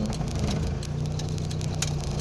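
Car interior while driving: a steady low engine and road hum, with scattered light clicks and rattles.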